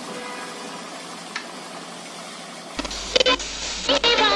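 A steady hiss with a single click, then near the end the audio cuts abruptly to a radio playing loudly: music or a station jingle over a low hum.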